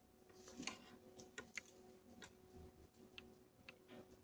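Near silence: room tone with a faint steady hum and several faint, irregularly spaced small clicks.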